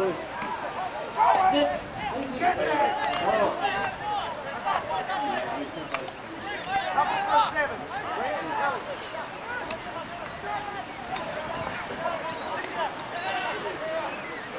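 Several people's voices talking and calling out over one another throughout, with no words clear enough to make out.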